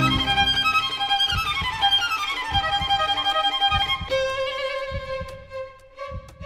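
Background film score of sustained high violin notes, with a falling glide of pitch starting about a second in. Soft low thuds sound underneath roughly once a second.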